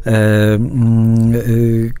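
A man's voice drawing out a long, steady hesitation sound, a held 'yyy', in three sustained stretches with brief breaks between them.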